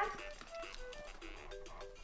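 Baby play gym playing a tinkly electronic tune of short single notes.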